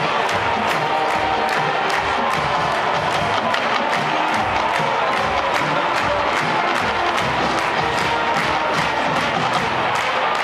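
A full college marching band of brass, woodwinds and drums playing a march, with a steady drum beat and sustained brass chords. A stadium crowd is heard under the band.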